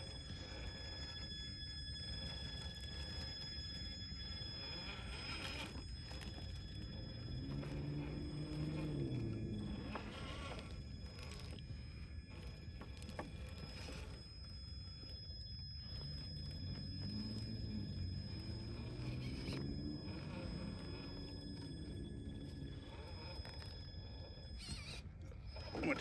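Traxxas TRX-4 High Trail RC crawler's stock brushed motor and gearbox whining as it crawls over roots and ledges. The whine rises and falls in pitch twice, once about a third of the way in and again past the middle, over a constant low rumble.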